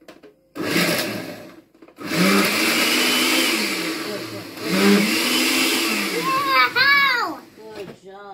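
Oster countertop blender grinding bread cubes into crumbs: a short pulse of about a second, then a run of about five seconds with the motor's pitch rising and falling as the load shifts.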